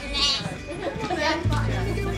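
A lamb bleating with a wavering call near the start, over background music.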